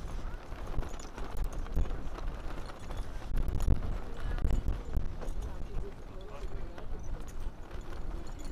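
Wind gusting over the microphone in an irregular, heavy low rumble, with flags flapping and knocking in the wind and people talking in the background.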